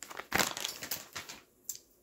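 Crinkling plastic of a stand-up pouch of laundry pods being handled and set down. The rustling runs for about a second, starting a little way in, and a single short click follows near the end.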